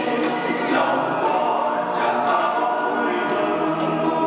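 A church choir singing a hymn in sustained, held notes.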